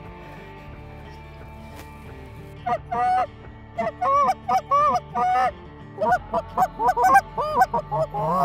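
Canada goose honking: a run of short honks begins about two and a half seconds in and comes faster over the last two seconds.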